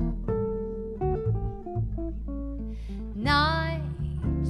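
Archtop jazz guitar and plucked double bass playing a slow ballad accompaniment, with single picked notes over a sustained bass line. Near the end a woman's voice comes in on a held sung note with vibrato.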